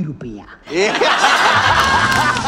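Studio audience laughing and clapping, starting about half a second in right after a spoken line. A short music sting comes in under the laughter in the second half.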